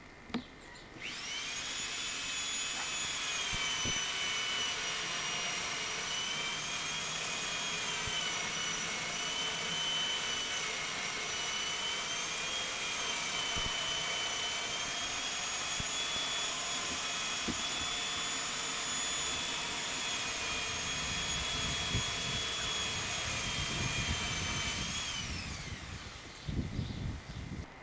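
A high-pitched motor whine that starts suddenly about a second in, wavers slightly in pitch, then winds down in pitch as it is switched off near the end.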